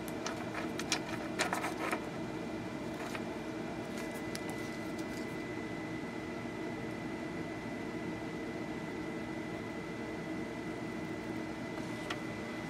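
Steady background hum with a faint high whine, and a few small clicks and taps in the first few seconds as wire leads and a soldering iron are handled over the circuit board.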